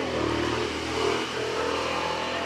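A motor vehicle's engine running steadily with a low hum.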